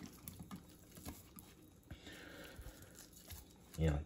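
Faint handling noises as raw ribeye steaks are turned over by hand in a ceramic baking dish: soft, scattered taps and rustles of meat against the dish.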